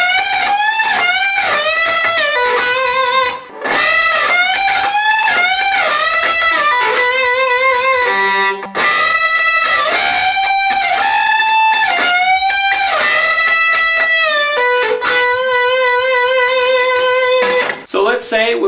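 Electric guitar playing a solo lick of dirty-sounding double-stop bends: the B string is bent up to the pitch of the note fretted on the high E string, and the shape is repeated in short phrases up the neck. The lick ends on a long held note with vibrato.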